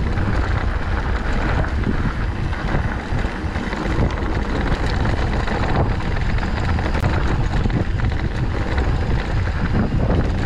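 Wind rushing over the microphone of a handlebar-mounted camera on a mountain bike riding a dirt trail, a steady low rumble with tyre noise on dirt and loose rock mixed in.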